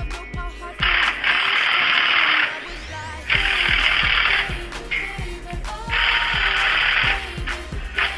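A pop song with a steady beat plays throughout. Three loud bursts of a power tool, each one to one and a half seconds long, break in over it.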